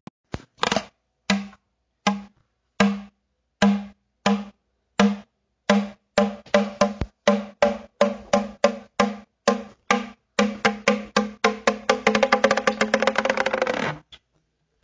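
Percussion music: a single pitched strike repeated, at first slowly, then coming ever faster until it becomes a rapid roll, which cuts off suddenly at the end.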